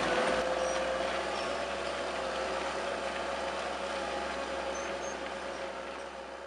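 Case IH CVX 165 tractor working steadily under load while pulling a six-furrow reversible plough through the soil, slowly growing fainter as it moves off. A few faint, short high chirps sound over it.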